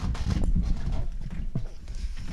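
Irregular thumps, knocks and footsteps as people get up from a studio news desk and walk off, picked up by the desk microphones.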